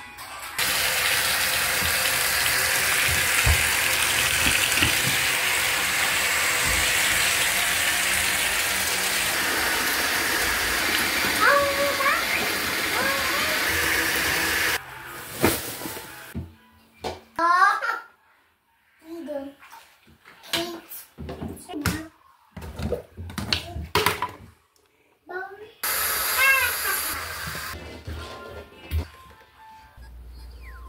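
Kitchen tap running into a stainless steel sink full of pots: a steady rush of water that stops abruptly about halfway through. After it come short knocks and rustles with snatches of voices.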